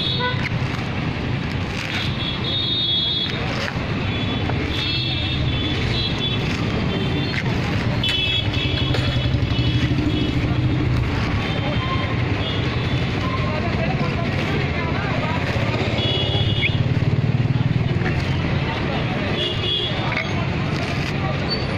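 Busy street ambience: a steady rumble of road traffic with several short vehicle horn toots and voices in the background.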